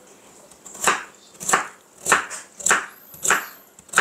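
Kitchen knife dicing a raw potato on a wooden cutting board: a steady run of about five cuts, each ending in a sharp knock of the blade on the board, nearly two a second, starting about a second in.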